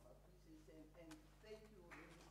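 Near silence in a large hall: faint, distant voices over a steady low hum.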